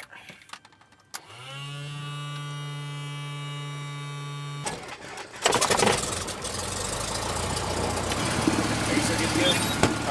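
Small single-engine Cessna's piston engine being started from the cockpit. A steady electric hum begins about a second in. The engine is cranked and catches about five seconds in, then runs steadily.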